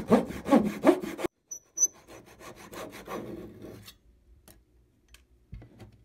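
Fine-toothed hand saw cutting thin wooden strips in an aluminium mitre box: rapid, even back-and-forth strokes that stop suddenly about a second in. Quieter scraping strokes follow for about two seconds, then a few light clicks and a knock near the end.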